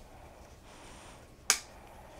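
Adjustable aluminium crutch being lengthened one notch: a single sharp metal click about a second and a half in as the spring-loaded push-button pin snaps into the next height hole.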